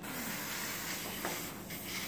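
Airbrush spraying gloss clear coat onto a plastic model part: a steady hiss of air and paint that cuts off briefly about one and a half seconds in, as the trigger is let go and pressed again.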